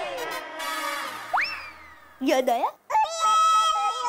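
Edited-in comic sound effects: a shimmering sweep of gliding tones, then a quick rising cartoon boing-like glide about a second and a half in. A wavering voice then says 'yaad', and sustained musical tones follow near the end.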